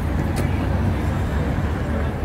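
City street traffic noise: a steady low rumble of vehicles at an intersection.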